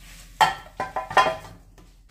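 Frying pan and metal spatula clinking against a glass baking dish as fried potato slices are pushed out: three sharp clinks, each with a brief ring, starting about half a second in.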